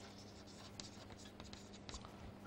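Chalk writing on a chalkboard: faint, quick scratches and light taps of the chalk as a word is written, over a faint steady low hum.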